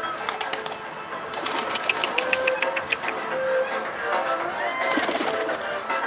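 Domestic pigeons cooing, over background music with runs of quick, evenly spaced clicks.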